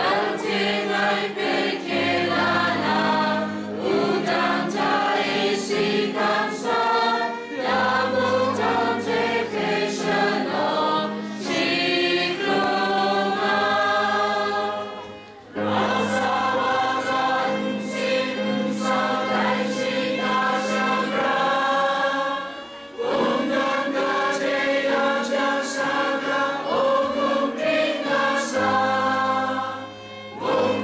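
A congregation of mostly women's voices singing a hymn together from songbooks, over held low notes, with short breaks between phrases about halfway through and again a few seconds later.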